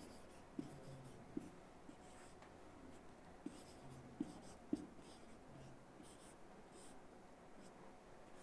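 Faint marker strokes on a whiteboard, with several light taps as the marker touches down during the first five seconds.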